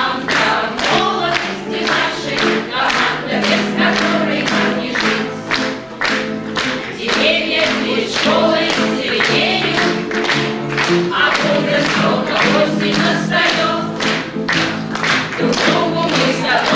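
A group of women's voices singing the school's teachers' anthem together over a steady beat.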